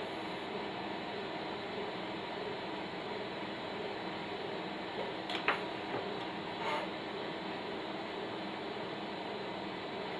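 Steady hiss with a faint hum under it, broken by a few light clicks about five and a half and six and a half seconds in.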